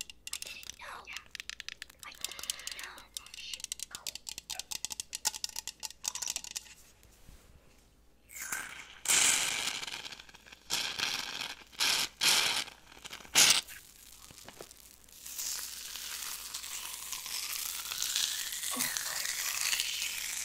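Crackling lotion worked right at a microphone: a dense run of fine crackles in the first several seconds, then loud rushing bursts about halfway through, and a steady hiss of hands rubbing the lotion near the end.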